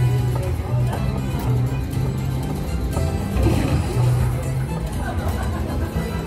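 An Aristocrat Wild Fiesta Coins slot machine playing its game music: a repeating line of held bass notes with a tune above.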